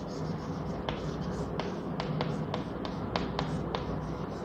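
Chalk writing on a blackboard: a quick run of about a dozen sharp taps from about a second in, roughly four a second, with light scratching between them as the letters are formed.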